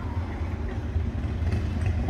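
Harley-Davidson motorcycles' V-twin engines burbling at low speed, a steady low rumble.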